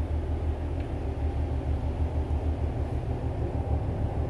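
A steady low background rumble with no distinct events.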